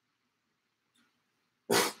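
Near silence with one faint click about a second in, then near the end a short, breathy man's 'okay', let out like a sigh after a sip of a drink.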